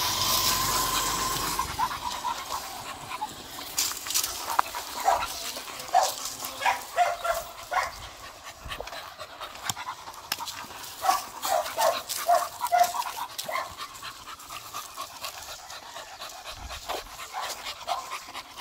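A beagle panting, with many short, irregular breath sounds.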